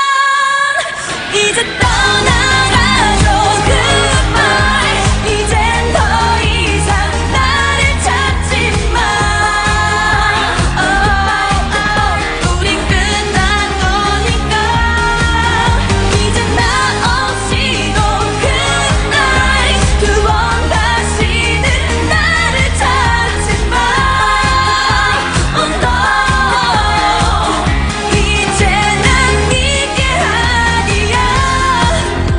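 A K-pop song performed live by female singers over a dance-pop backing track. The song opens sparse, without bass, and about two seconds in a heavy bass beat comes in and carries on under the sung melody.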